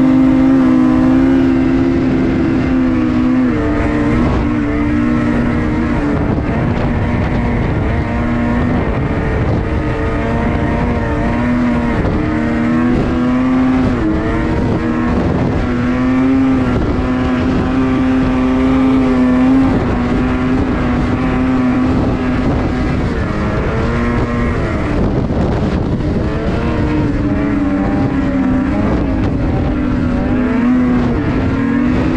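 Ski-Doo snowmobile engine running hard while riding, loud and close. Its pitch rises and falls again and again as the throttle changes, over a rough rumble.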